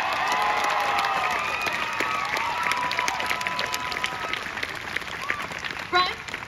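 Theatre audience applauding and cheering at the end of a musical number: dense clapping with voices whooping over it, slowly dying down.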